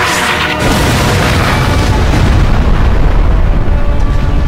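Cartoon impact sound effects: a booming crash with a deep rumble that grows louder, as a body is hurled into a city street and breaks up the paving. A film score plays under it.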